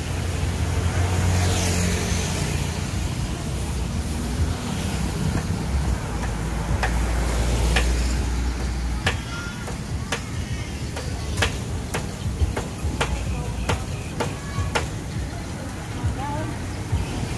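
Low rumble of road traffic through the first half, then from about six and a half seconds in a run of sharp, irregular metallic clicks and clinks from steel grill tongs being worked.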